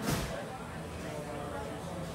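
Restaurant ambience: a steady background hum with faint voices of other diners, and a brief rush of noise right at the start.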